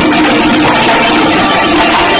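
Loud instrumental music of a Haryanvi ragni folk ensemble, with a steady held note over a dense, busy band of sound.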